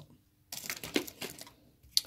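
A small clear plastic bag of transistors crinkling and rustling as it is handled, an irregular crackle starting about half a second in and lasting about a second.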